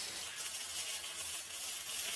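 Flux-cored (gasless) arc welding on steel tubing with a Harbor Freight Titanium Easy-Flux 125: the arc gives a steady, quiet hiss.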